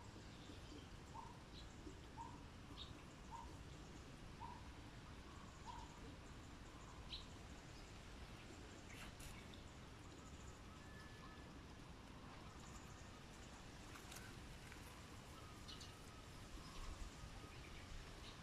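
Near silence with faint background noise and a faint bird repeating a short chirp about once a second for the first six seconds, then a few scattered higher chirps.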